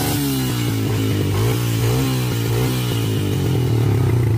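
ATV engine running at raised revs, its pitch rising as the throttle opens just before and wavering up and down as it is held.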